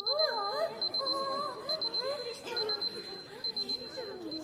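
Electronic alarm beeping: quick clusters of three or four high beeps, repeating a little under once a second, with voices talking underneath.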